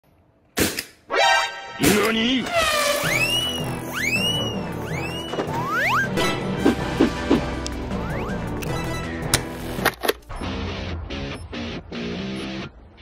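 Edited soundtrack of music with cartoon-style sound effects, including several springy pitch glides that rise and fall in the first half and a few short sharp hits near the middle.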